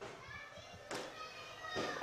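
Faint voices in the background with a single light tap about a second in.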